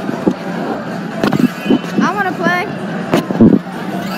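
Busy arcade din: game cabinets' electronic sounds and music over voices, with two sharp knocks, about a second in and about three seconds in.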